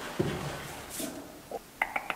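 Peacock butterfly flicking its wings open on a wall, giving a short, soft, high swish of wing friction about halfway through. This is a faint hiss that the explorer thinks may be for drying off or for warding off enemies. A dull thump comes near the start and a few faint clicks near the end.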